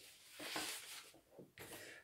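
Faint rustling of paper and cardboard as a cardboard pirate hat is put on and the gift box is handled.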